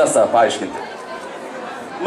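Brief bits of a man's voice over a microphone in the first half-second, then low crowd chatter in a large hall.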